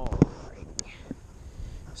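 A few short clicks and taps from handling a fishing rod and baitcasting reel, sharpest just after the start, then only faint ticks over a low hiss.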